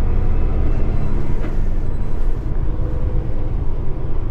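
Semi truck's diesel engine running as it drives slowly, heard from inside the cab as a steady low rumble, with one light tick about a second and a half in.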